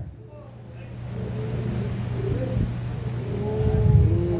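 A steady low hum in the room, with faint drawn-out voices from the congregation rising in the second half.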